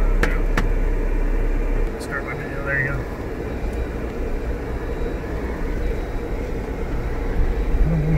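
Engine and tyre noise heard inside the cab of a truck crawling slowly along a soft sandy dirt track: a steady low rumble, a little louder for the first couple of seconds, with two sharp clicks near the start.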